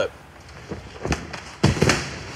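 A person doing a backflip on a hard floor: a light thump about a second in, then a louder thud near the end as he lands, with a short vocal sound over it.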